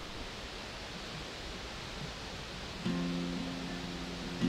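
A low steady hiss of outdoor ambience, then about three seconds in a steel-string acoustic guitar is strummed and its opening chord rings on.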